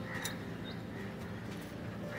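Outdoor ambience: birds calling in the distance every half second or so over a steady low hum, with a few faint clicks.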